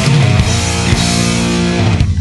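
Loud rock music, a full band with electric guitar and drums.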